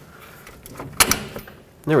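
A single sharp metallic clunk about a second in, as the camber bolt slides through the strut and steering knuckle while the knuckle is worked into line, with faint handling noise around it.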